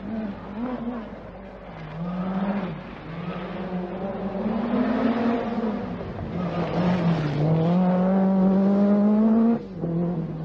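Lancia Delta S4's turbocharged and supercharged four-cylinder rally engine at full throttle, the pitch climbing and dropping again and again as it is driven hard through the gears. Near the end it holds a long, high, steady note, then breaks off abruptly.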